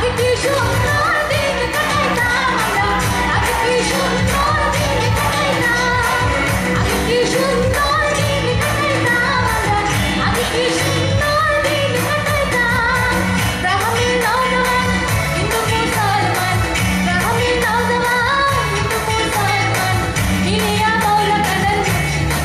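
A woman singing a pop song into a microphone with an amplified live band of electric guitars and keyboards, over a steady bass line and a regular beat.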